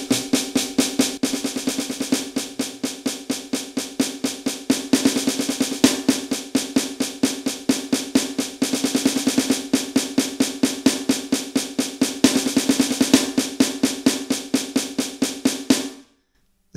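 Sticks playing a pad of an electronic drum kit, its snare sound struck in a steady stream of even sixteenth notes. About once a measure there is a burst of faster 32nd notes lasting roughly a second; this is a hand-speed drill whose measures alternate single strokes and double strokes, meant to sound exactly alike. The playing stops suddenly at the end.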